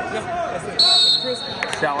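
A referee's whistle blown once, short and sharp, a little under a second in, stopping the action because the wrestlers have gone out of bounds.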